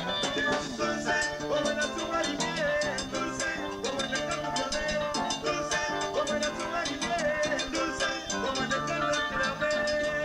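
Live chicha (Peruvian cumbia) band playing an instrumental passage: electronic keyboard melody over a bass line and steady percussion strokes.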